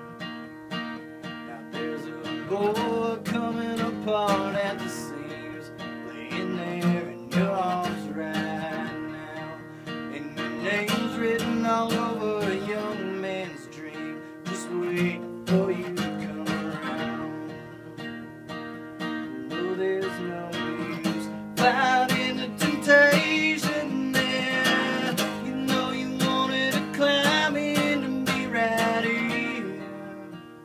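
Steel-string acoustic guitar played solo, strummed chords and picked notes in an instrumental break of a country-style song.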